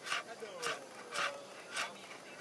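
Kitchen knife chopping leafy greens on a cutting board, four even chops about half a second apart.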